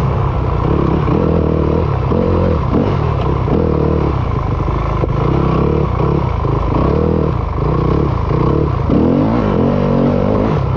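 2020 Yamaha YZ250FX's 250 cc four-stroke single-cylinder engine being ridden hard on a dirt trail, the revs rising and falling every second or so as the throttle opens and closes, with a rising rev near the end.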